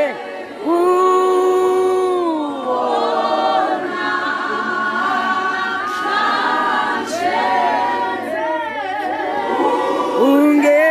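A group of voices singing together, with long held notes and no clear instrument behind them.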